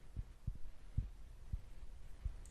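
About five faint, low thumps at uneven spacing, over a steady low electrical hum.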